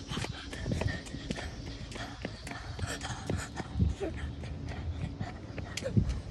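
Footfalls of a child running on pavement, quick and irregular, with knocks and rubbing from the handheld phone jostling as he runs.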